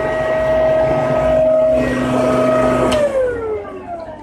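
Corded electric leaf blower-vacuum, hooked up to a hose as a workshop dust extractor, running with a steady whine over a rush of air. About three seconds in there is a click, and the whine glides down as the motor winds down.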